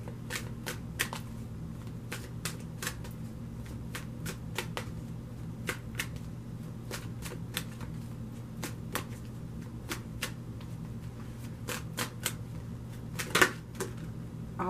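A deck of oracle cards shuffled overhand by hand: irregular sharp card slaps a few times a second, with a louder flurry near the end. A steady low hum runs underneath.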